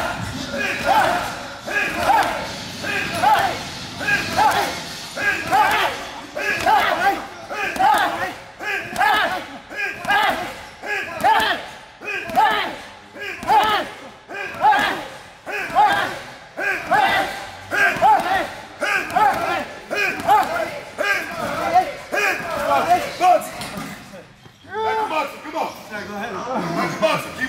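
Heavy bags being punched, thudding in a steady rhythm of about two a second, with voices over the blows.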